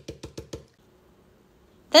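Stencil brush being pounced up and down onto a plastic stencil laid over fabric: a quick, even run of dull taps, about eight a second, that stops under a second in as the brush is lifted.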